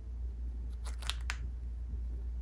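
A monk parakeet's beak clicking: a quick run of four or five sharp clicks about a second in, over a steady low hum.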